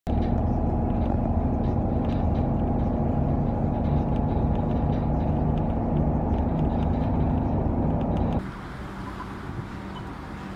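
Steady engine and road rumble heard from inside a moving vehicle. It cuts off suddenly about eight seconds in, leaving a much quieter outdoor street sound.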